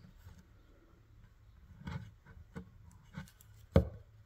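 Handling noise from fingers turning and rubbing a small rough stone: a few soft scrapes in the second half, then a single sharp knock near the end.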